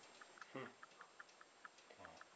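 Near silence with faint, quick, unevenly spaced ticking, several clicks a second, and a short low voice sound about half a second in.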